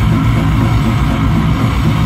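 Metal band playing live at full volume: down-tuned guitars, bass and drums merge into a dense, steady low rumble.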